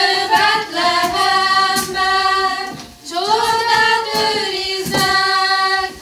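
A group of women and girls singing a Hungarian nativity-play folk song together, in two long held phrases with a short breath about halfway.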